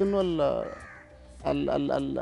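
A man's voice drawing out a hesitant, falling 'inno…' and, after a short pause, an 'ah' sound.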